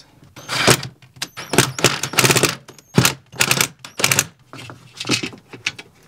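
Cordless drill driving screws into a campervan window's inside trim in a run of short bursts, with a brief pause between each.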